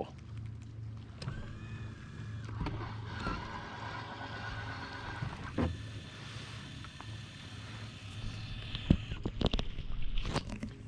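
Minn Kota Ulterra trolling motor's electric auto-deploy mechanism whining steadily as it swings the motor down into the water, with a knock midway and a sharper clunk near the end as it locks in place.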